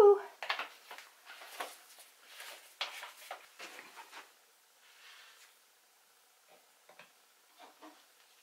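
A palette knife worked by a gloved hand along the edge of a wet acrylic-painted canvas: a run of short, soft scrapes and rustles that die away after about four seconds, followed by a couple of faint ticks near the end.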